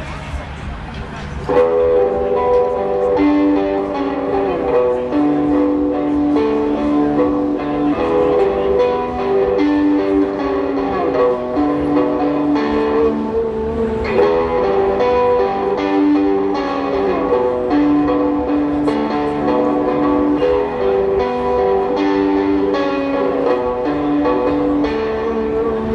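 Live rock band playing an instrumental intro on guitars, bass and drums, coming in together about a second and a half in with a repeating guitar figure over a steady beat.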